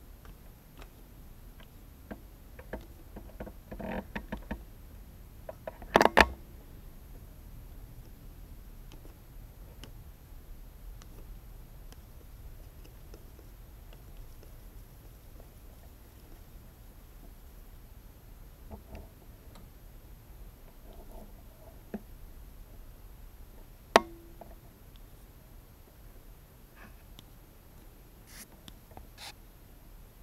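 Handling noise from fitting a clear plastic cover on an ABS ring over a small oscilloscope's tube and working a hand near it: scattered light clicks and rubbing, a pair of loud knocks about six seconds in, and a single sharp click late on.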